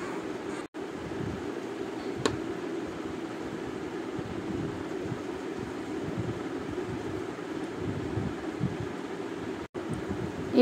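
Steady low-pitched background hum and hiss, with one brief click about two seconds in. The sound drops out for an instant just before the first second and again near the end.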